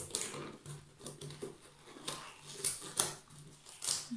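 A rubber balloon being stretched and worked over the rim of a tin can by hand, with a few light clicks and scrapes of rubber and tin.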